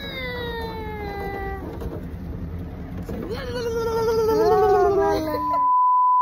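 A toddler's voice making two long, drawn-out vocal sounds, the first sliding down in pitch and the second wavering, over a steady low hum. Near the end a steady test-tone beep starts, the tone that goes with a colour-bar test card.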